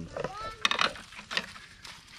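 A few sharp clicks of a knife and garlic slices against a ceramic plate and a steel wok as the garlic is scraped into the pan. A short rising call, voice- or animal-like, is heard just after the start.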